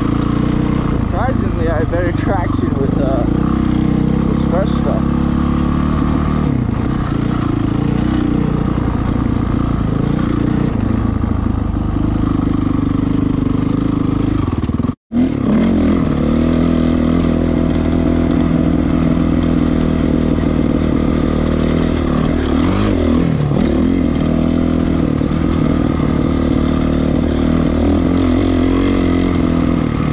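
A 2008 Honda CRF450R dirt bike's single-cylinder four-stroke engine running under load on a snowy trail, its note rising and falling with the throttle. The sound breaks off for a moment about halfway through.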